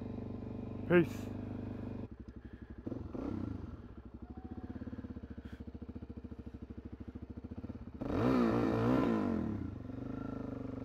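Suzuki DR-Z400SM single-cylinder four-stroke engine idling, then pulling away at low revs with a slow, even pulsing beat. About eight seconds in it revs up and down, the loudest part.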